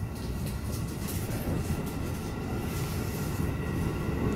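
Electric commuter train running, heard from inside the passenger car: a steady low rumble of wheels on rail with faint steady motor tones, and a few light clicks about a second in.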